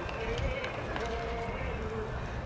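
Indistinct voices talking over a steady low outdoor rumble, with a few faint sharp clicks.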